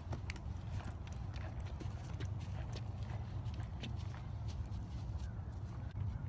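Footsteps of a person walking on dry ground, an irregular run of short crunches and clicks, over a steady low rumble.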